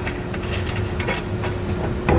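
Steady low workshop hum, with a few faint light clicks as hex bolts and toothed washers are threaded by hand into the vehicle's frame rail through a steel hitch bracket.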